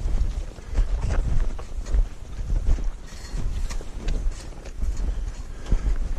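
Wind buffeting the microphone in gusts, with footsteps in snow about once a second.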